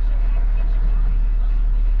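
Truck engine idling with a steady low rumble, heard from inside the cab.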